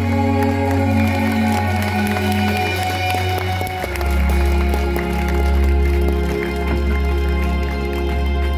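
Computer-made backing track played over a PA: sustained bass notes and held chords, moving to a new chord about four seconds in.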